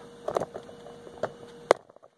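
A few soft knocks from a plastic five-gallon bucket being handled and tilted, over a faint steady hum, with one sharp click near the end after which the sound cuts out almost to silence.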